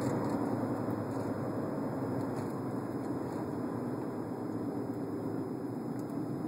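Steady road and engine noise inside the cabin of a moving car: an even rush that holds level throughout, with no distinct events.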